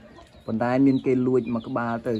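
A man's voice in short utterances starting about half a second in, with faint high peeping from young chicks.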